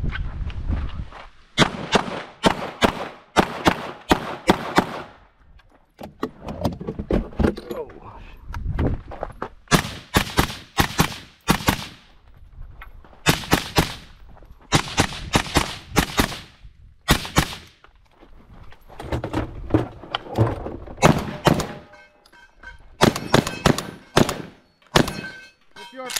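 Rapid gunfire in bursts with short pauses during a timed 3-gun stage: a Tavor SAR rifle fitted with a SilencerCo Omega 300 suppressor, then a Mossberg 930 JM Pro semi-auto 12-gauge shotgun, with a fast string of shots near the end.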